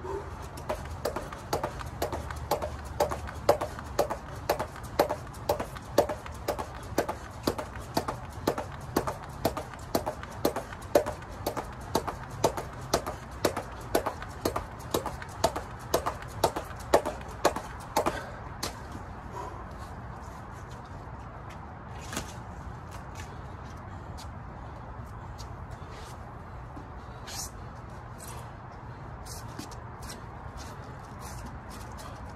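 Weighted five-pound jump rope turning steadily and slapping the rubber mat about twice a second, with the jumper's landings. The slaps stop about eighteen seconds in, leaving only a faint background with a couple of light knocks.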